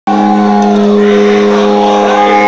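Loud distorted electric guitar through a stage amplifier, holding a steady, sustained chord whose notes ring on unchanged.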